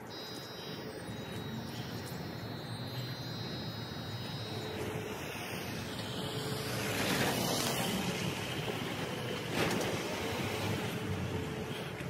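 Steady outdoor vehicle noise, typical of road traffic, growing louder about seven seconds in, with a faint high whine during the first few seconds.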